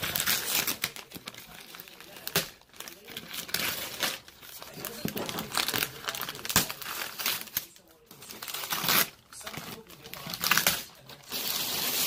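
Brown kraft-paper parcel wrapping being torn and crumpled by hand, in irregular loud rustling bursts with short pauses between them.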